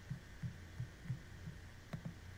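Faint steady low hum with soft, irregular low thumps, and a sharper click just before the end.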